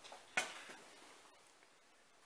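A single sharp click about half a second in, then only faint room hiss.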